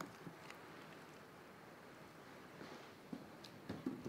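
Quiet knife work on a skinned whitetail skull: a blade cutting tissue from around the eye socket, heard as a few faint soft clicks and wet scrapes over low room noise.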